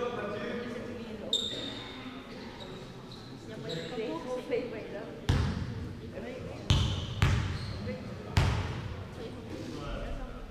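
A basketball bounced hard on a sports-hall floor four times in the second half, at uneven intervals, each bounce ringing in the large hall. There is a short squeak about a second in, and voices murmur in the background.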